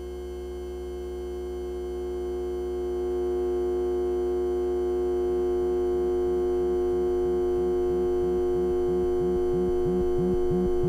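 Handmade patch-cable sine-wave synthesizer droning on several steady pure tones that swell louder over the first few seconds. About halfway, a quick pulse of short low blips joins in at about three a second.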